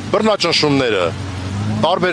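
A man speaking to reporters, over a low steady background hum.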